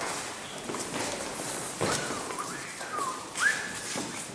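A person whistling a short wavering tune of sliding notes, starting about halfway through and ending on a quick rising note, the loudest sound here. Underneath are the footsteps and shuffling of several people walking around.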